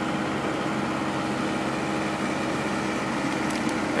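Trailer refrigeration unit with a Yanmar diesel engine running steadily: a constant drone with a faint, unchanging hum.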